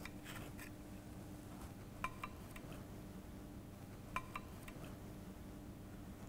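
Faint light metallic clicks, two quick pairs about two seconds apart, as a weld gauge is set against a welded steel test plate to measure the weld's reinforcement height, over a faint steady hum.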